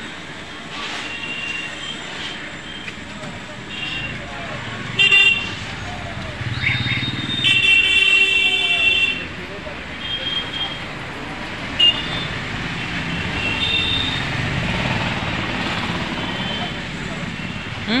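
Road traffic with vehicle horns tooting again and again: several short toots and one longer, louder horn blast around the middle.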